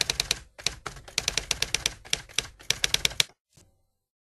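Typewriter sound effect: quick, irregular runs of sharp key clacks that stop a little past three seconds in.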